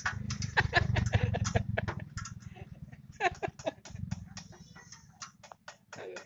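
Irregular metallic clicks and taps from a hand tool working on bolts behind the front fender of a 1948 Willys Jeep, over a low hum that fades about four seconds in.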